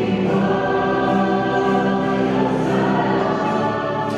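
Choir singing a slow hymn in long held notes, the chord shifting a couple of times.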